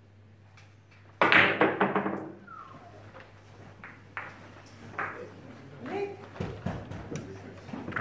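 A carom billiards shot: short clicks of cue and ivory-hard balls, then a sudden loud vocal exclamation about a second in as the attempt at the figure fails. Afterwards, scattered soft clicks as the balls are set back on the cloth, with low voices.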